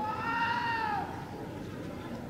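A single high-pitched, drawn-out cry lasting about a second, its pitch arching and then falling off at the end.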